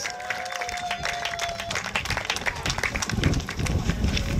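A small crowd applauding: scattered clapping throughout, with one steady held tone over it for about the first second and a half.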